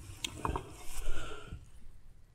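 Coarse salt being scooped by hand and sprinkled over whole fish in an enamel bowl: a few sharp clicks, then a grainy, scratchy hiss about a second in.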